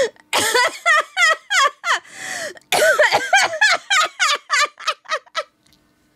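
A woman laughing hard: a long run of short, high-pitched laughs about three a second, with a drawn-in breath about two seconds in, dying away about five and a half seconds in.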